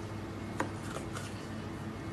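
Kitchen knife cutting a red bell pepper on a plastic cutting board. There is one sharp knock of the blade on the board a little over half a second in and a few faint ticks after it, over a steady low hum.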